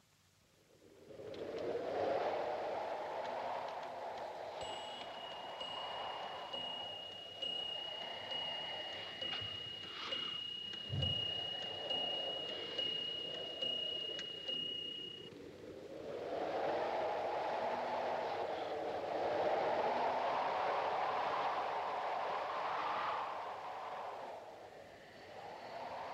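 Wind howling outside the building, rising and falling in long gusts. A thin, steady high whistle sounds through the middle for about ten seconds, and there is a dull thud about eleven seconds in.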